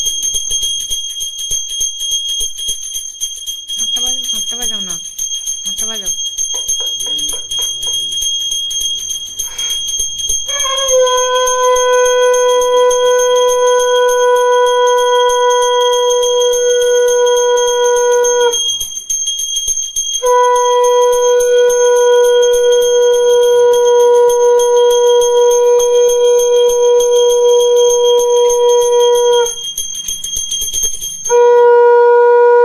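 A puja hand bell rung continuously with a steady high ring, joined about ten seconds in by a conch shell blown in two long steady blasts of about eight seconds each, with a short break between them.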